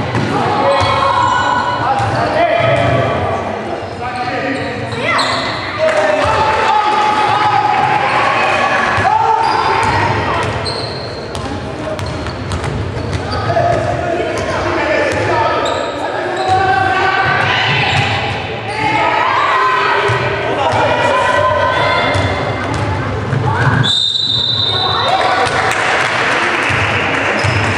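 Indoor basketball game: the ball bouncing on the court floor and players' voices calling and shouting, echoing in a large sports hall. A referee's whistle blows one steady blast near the end.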